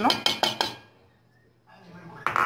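A metal spoon clinking and scraping against a metal pot as milk is stirred. There is a quick run of clinks that stops a little over half a second in.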